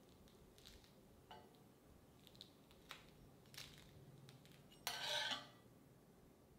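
Steel spatula scraping under a crisp dosa on a cast iron tawa: a few faint light scrapes and taps, then one louder scrape about five seconds in as the dosa is lifted off.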